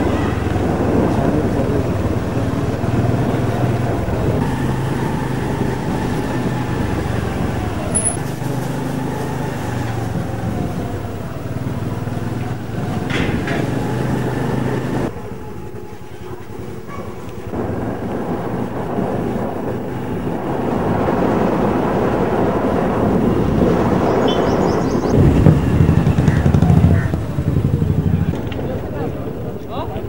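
A motor vehicle's engine runs under road and wind noise while on the move, its note stepping up and down with speed. The sound drops away briefly a little past halfway and is louder with low rumbling near the end.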